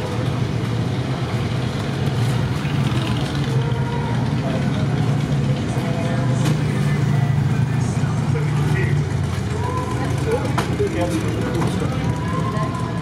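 A motor vehicle engine idling with a steady low rumble, with people talking in the background.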